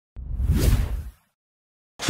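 Whoosh sound effect for an animated intro graphic: a small click, then a rushing swish with a deep rumble under it that swells and fades out after about a second.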